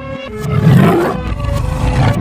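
Tiger roar sound effect, a long rough low roar that starts about half a second in and is loudest around a second in.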